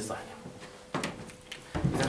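A single sharp click or knock about a second in, during a quiet pause between spoken words, over a faint steady hum.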